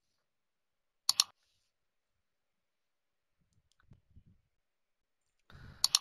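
Computer mouse button clicks: a quick sharp double click about a second in, then another pair of clicks near the end.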